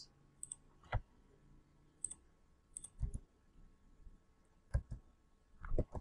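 Computer mouse and keyboard clicks: a scattering of short, separate clicks, several coming in quick pairs.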